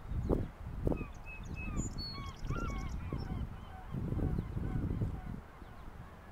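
A distant flock of birds calling, many short calls overlapping throughout, with gusts of wind rumbling on the microphone, strongest about four to five seconds in.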